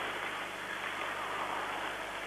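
Steady, even background noise of an ice hockey arena: the crowd and the play on the ice blended into one haze, heard through an old television broadcast's hiss.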